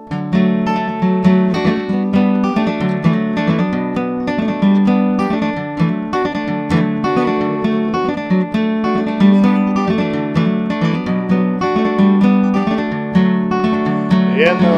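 Acoustic guitar played solo as the instrumental intro to a folk song: a busy, steady run of picked notes and chords.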